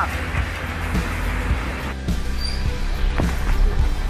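A vehicle driving through floodwater: a steady low engine rumble under a wash of water noise, with music playing along with it. The sound changes abruptly about two seconds in.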